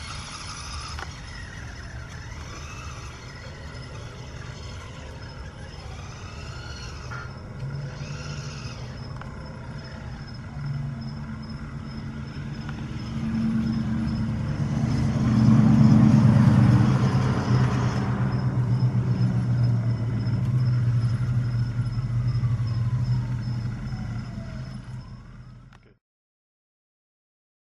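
Radio-controlled model's motor running while the controller plays back a recorded control sequence. Its low hum grows louder about halfway through and fades out near the end.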